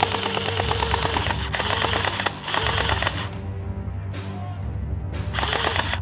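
Gel blaster firing on full auto, a rapid even rattle of shots. About three seconds of near-continuous firing with two brief breaks, then a short burst near the end. Background music plays throughout.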